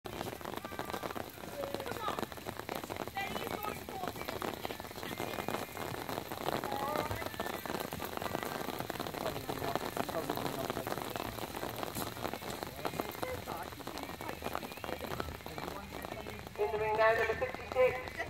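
Light rain pattering, a steady close crackle of many small drops, with faint voices in the distance. A person starts speaking close by near the end.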